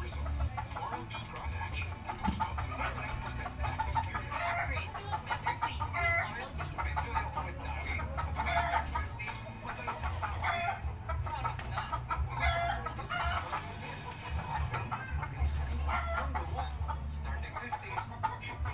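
Chickens clucking, with a rooster crowing: short pitched calls every second or two, over a low hum.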